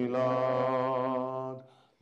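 Singing of a slow Christian praise chorus, one long held note that fades out about a second and a half in.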